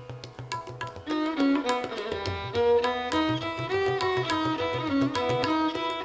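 Violin playing a melody in raag Madhuvanti, its notes gliding between pitches, over tabla keeping teentaal. The playing grows louder about a second in, and the tabla's low bass-drum strokes come in strongly about two seconds in.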